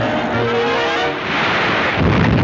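Orchestral cartoon score playing held brass and string notes. About a second in, a rising rushing sound effect swells over it as water bursts in.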